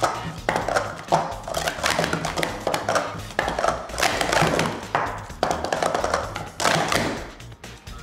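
Plastic sport-stacking cups clattering and tapping on a stacking mat in rapid strings as they are stacked up into pyramids and swept back down during a timed run, over background music.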